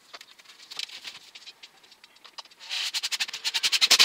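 Sped-up time-lapse audio of plasterboard being fixed to a ceiling: a chatter of quick high clicks, sparse at first and then a dense, rapid run that is loudest near the end.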